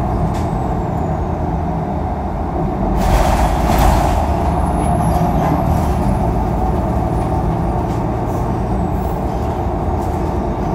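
Cabin sound of a 2016 Nova Bus LFS city bus under way: a steady low engine and road drone. About three seconds in, a loud hiss of air lasting about a second comes from the bus's air brake system. A faint high whine slides in pitch over it.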